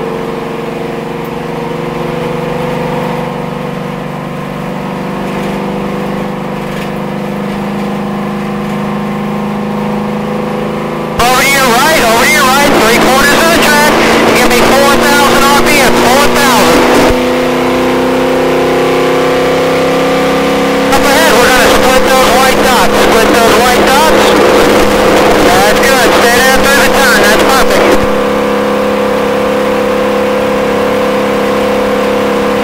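V8 engine of a NASCAR stock car heard from inside the cockpit, running steadily under load in fourth gear at about 3,000 rpm. Its pitch creeps slowly upward.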